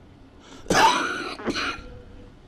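A man clearing his throat close to a microphone: one long burst a little under a second in, then a shorter second one.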